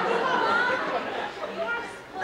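Several people talking at once: indistinct, overlapping voices, louder in the first half and tailing off near the end.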